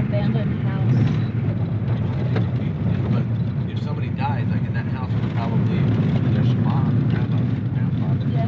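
A vehicle driving at steady speed, heard from inside the cabin: a continuous low engine and road rumble, with faint voices in the car.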